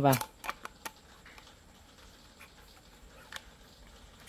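A few sharp plastic clicks as a shredding-blade insert is pushed into the slot of a manual rotary vegetable slicer's drum: three in quick succession in the first second and one more later, with faint handling noise between.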